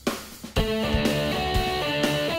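Rock band music: a drum hit, then about half a second in the electric guitar and drum kit come in together, playing a steady rock beat with sustained guitar chords.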